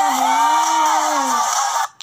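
A female voice singing a long held note that wavers and then slides down, before the sound cuts off abruptly just before the end.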